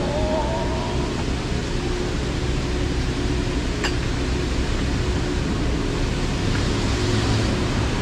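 Steady outdoor street noise, a broad hiss and rumble of traffic, with a faint steady hum under it. A single sharp click comes about four seconds in.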